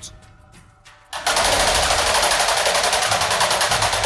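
A game-show category wheel spinning: a fast, even run of clicks starts suddenly about a second in and keeps going steadily.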